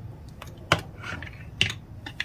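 Two sharp clicks of kitchen utensils or containers being handled, about a second apart, over a low room hum.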